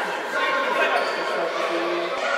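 Indistinct voices of several people talking, echoing in a large sports hall.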